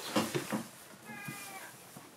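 Carving tools and wood knocking and scraping on a workbench, a few sharp clicks in the first half second, then about a second in a short high-pitched squeak-like call lasting about half a second.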